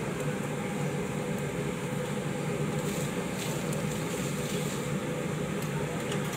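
A steady low machine hum, like a fan or blower motor, with a couple of light clicks of metal utensils on the grill.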